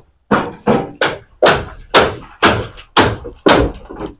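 Hammer blows in a steady rhythm, about two a second, each a sharp loud knock: nailing on the roofing work of a building under renovation.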